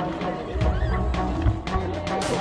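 Background music laid over the video, with pitched instruments and a low beat.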